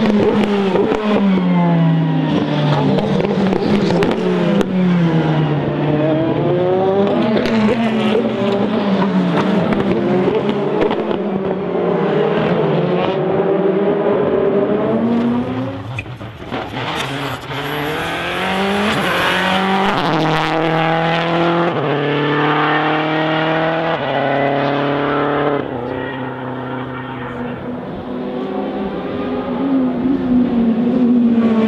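Racing car engines revving, their pitch sweeping up and down. In the second half the pitch climbs and drops in a run of steps, like quick gear changes.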